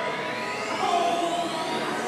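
Ambient electronic music with a slowly rising synthesized whine that climbs steadily in pitch and stops near the end.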